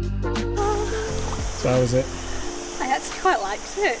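Background music that stops about halfway through, then a woman's voice exclaiming and laughing over the hiss of running river water.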